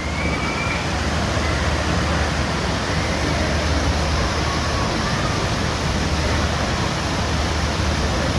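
Steady rushing of water pouring from the spouts and fountains of a water-park play structure into its shallow splash pool, with a low steady rumble underneath.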